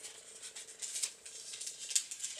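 Faint rustling and crinkling of a folded sheet of translucent drawing paper being handled and opened out, in soft scattered bits.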